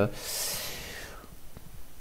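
A man's audible breath between phrases of speech: about a second of breathy hiss that fades away.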